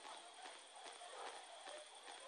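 Near silence: faint outdoor hiss with a few soft, irregular clicks.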